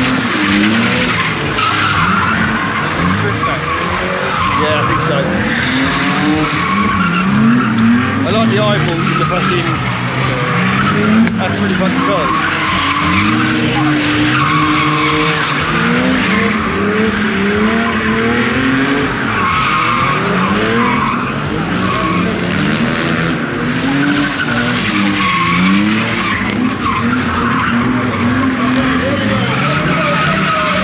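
Drift cars sliding with their tyres squealing, engines revving up and dropping back again and again as they are held sideways through the turns.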